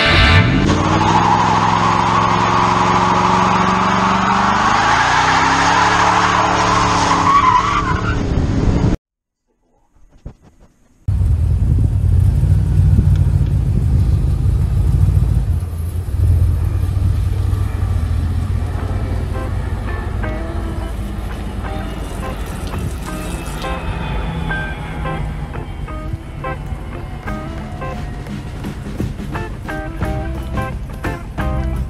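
A vehicle engine pulling away under load, its pitch rising in steps as it accelerates, with tyre noise on gravel; it cuts off. After about two seconds of silence, the 1975 Dodge M400 motorhome's engine runs with a deep rumble, its pitch slowly falling as it drives off.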